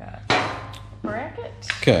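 A metal TSS sensor mounting bracket set down on a workbench, giving one short clatter about a quarter-second in that quickly dies away.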